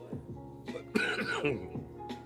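A man clears his throat about a second in, a short rough cough-like burst, over steady background music.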